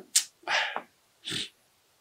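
A man's breath and mouth noises between spoken phrases: three short breathy sounds with no voice in them, the longest about half a second in.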